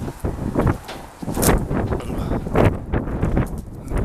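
Wind buffeting the microphone in uneven gusts, with footsteps through rough, dry grass.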